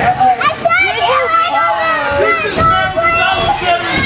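A wrestling crowd with many children among them, many voices yelling and chattering at once.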